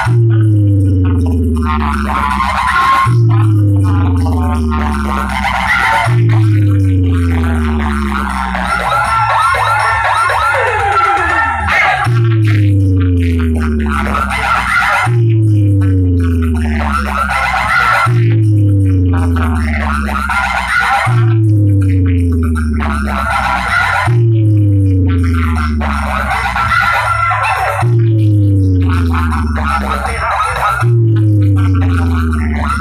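Loud dance music played through a large DJ sound-box rig, built on a deep bass note that slides down in pitch and restarts about every three seconds. The pattern breaks off for a few seconds near the middle, then returns.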